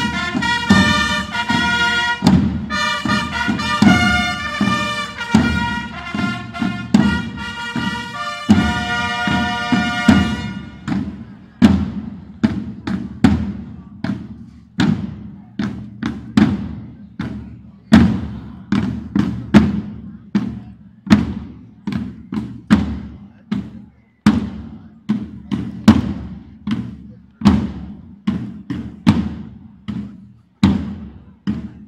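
Long herald trumpets play a fanfare over marching drums, and the trumpets stop about ten seconds in. After that a corps of field drums keeps beating a steady marching cadence on its own.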